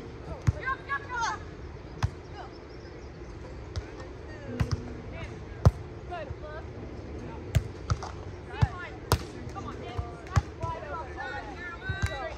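A volleyball being struck by players' hands and forearms: about ten sharp hits, spaced irregularly a second or so apart, the loudest a little before the middle. Voices call out between the hits.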